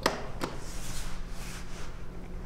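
Elevator call button pressed: a sharp click, then a second click about half a second later, followed by soft rustling, over a steady low hum.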